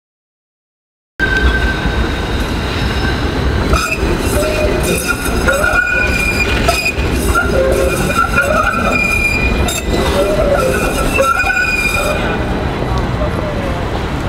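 Modern low-floor electric tram moving off close by, with a low running rumble and high-pitched steel wheel squeal coming and going. The sound starts abruptly about a second in.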